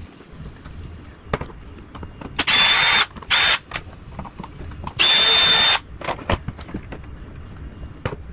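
Cordless drill/driver with a long Phillips bit backing out the screws of a car's plastic air-filter box cover. It makes three short runs of high motor whine, the last the longest, with small plastic clicks and handling knocks in between.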